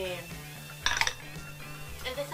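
A plastic makeup compact case clicking, two sharp clicks close together about a second in.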